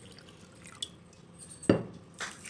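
Water dripping from a measuring cup onto sugar in a kadhai as the pour begins, mostly quiet, with a small tick about a second in and a sharper knock near the end.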